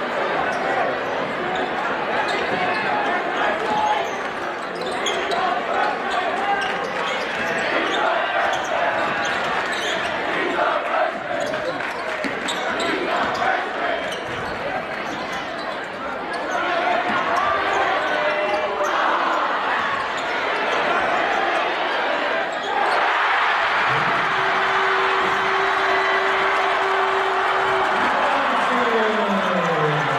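Crowd noise in a school gymnasium during a basketball game: many voices shouting and chattering, with a basketball bouncing on the court. The crowd gets louder about five seconds from the end, and a steady held tone starts shortly after.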